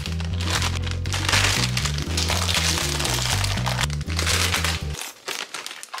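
Background music with a stepping bass line, over the crinkling of a plastic candy bag being pulled open. The music cuts off about five seconds in.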